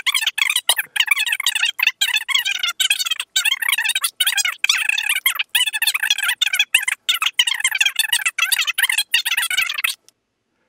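A man's speech played back sped up, so it comes out high-pitched, rapid and unintelligible, with no low end. It cuts off suddenly at the end.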